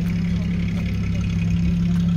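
Steady low hum of an idling engine, even and unbroken, with faint background voices.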